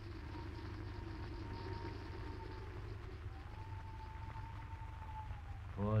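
Faint steady hum and hiss of an old radio recording, with a thin high tone that drifts slightly in pitch, heard twice.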